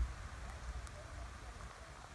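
Faint outdoor background: a steady soft hiss with low wind rumble on the microphone, which fades over the first half second.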